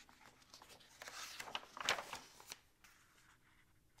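Faint rustling of a picture book's paper page being turned, starting about a second in and lasting about a second and a half, with one sharper flick in the middle.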